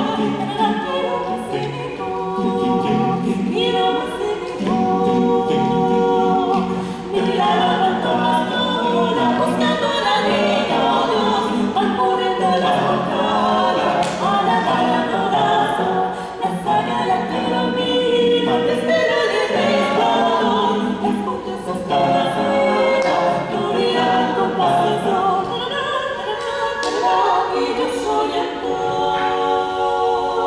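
Small mixed vocal ensemble of men and women singing a cappella in several parts, a villancico sung in lively phrases with short breaks between them.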